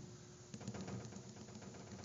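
A pen drawing a dashed line on paper: a faint, irregular series of small ticks as each short dash is stroked.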